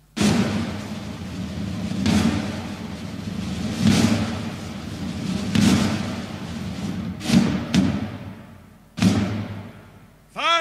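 Heavy thuds with a long echo, roughly one every two seconds, with two close together past the middle.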